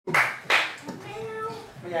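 Two sharp hand claps about half a second apart, then a voice in a reverberant hall.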